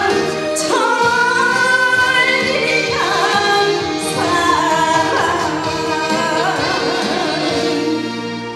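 A woman singing a Korean trot song over its backing track, her held notes wavering with vibrato.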